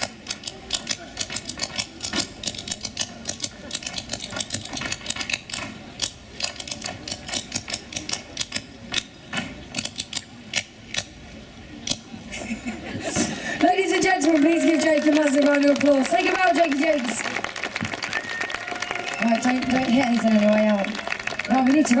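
Tap dancing on a stage: rapid, irregular clicks and taps of tap shoes for about twelve seconds. Then the taps stop and applause with voices rises.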